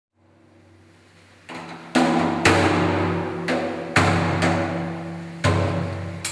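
Large hand-held frame drum struck in a slow rhythm, strokes about half a second apart in groups of three, each stroke ringing on with a low pitched tone; a faint low hum comes before the first stroke.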